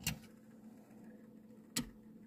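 Two sharp clicks, one at the start and one near the end, as a die-cast toy car is handled on a clear plastic display turntable; the second is the car being set down on it. Under them runs the faint steady hum of the turntable's motor.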